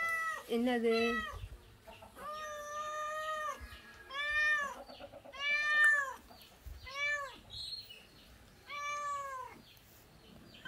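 Domestic cat meowing over and over, about six calls a second or two apart, the longest about two seconds in and held for over a second.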